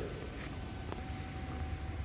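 Low steady background hum of a large shop room, with a single faint click about a second in and a faint thin steady tone in the second half.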